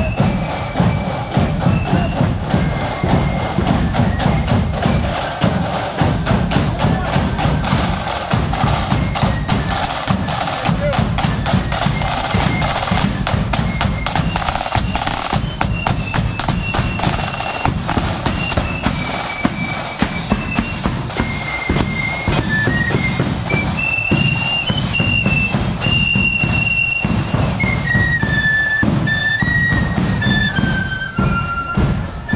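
Marching flute band playing: side drums rattling and a bass drum beating under a high flute melody, which comes through more clearly in the second half as the band passes close.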